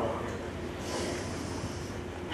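A short breathy hiss about a second in, over a low steady hum.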